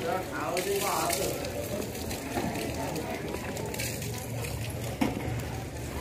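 Indistinct voices, with no clear words, mostly in the first second, over a steady outdoor background noise.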